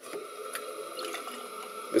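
Hot water running from a kitchen tap into a ceramic mug, a steady rush of water filling the cup.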